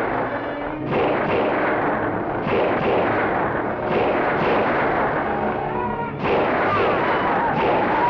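Film sound effects of a gunfight: about five revolver shots, each ringing out and trailing off, over the clatter of galloping horses.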